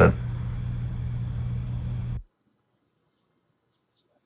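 Steady low hum with hiss from an open microphone. It cuts off suddenly a little over two seconds in, leaving near silence.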